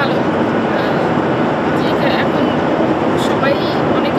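Steady, loud cabin noise inside a Boeing 787-8 Dreamliner airliner, with a woman's voice speaking faintly over it.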